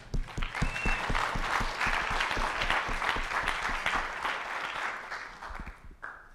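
Audience applauding: many hands clapping together, beginning right away and dwindling away toward the end.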